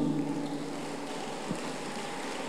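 Pause in amplified speech: the steady background hiss of a PA system in a large hall, with a faint held tone that fades out in the first second and a single soft tap about a second and a half in.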